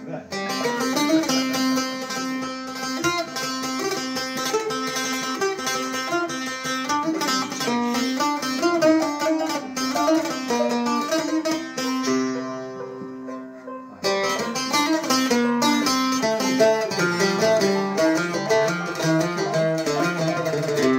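Oud and banjo played together, a fast plucked-string melody with many quick notes. About twelve seconds in, the playing thins to a couple of ringing notes for about two seconds, then both instruments pick up again.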